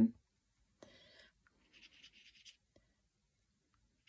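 Faint, soft scratchy brushing of a water brush's bristles across wet watercolour card, in a couple of short strokes within the first half.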